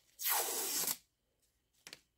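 Backing strip being peeled off double-sided golf grip tape wound on a putter shaft: a ripping peel lasting about a second that stops abruptly, then a brief crackle near the end.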